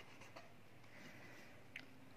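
Faint scratching of a pen writing on paper, with a few small ticks, barely above near silence.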